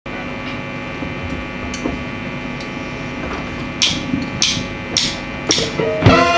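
Steady electrical hum from the band's amplifiers and PA, with a few faint clicks. Near the end come four sharp, evenly spaced strikes a little over half a second apart: a drummer's count-in just before the band starts the song.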